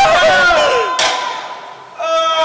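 Several men yelling and cheering to hype up a heavy barbell deadlift, with a sharp knock about a second in.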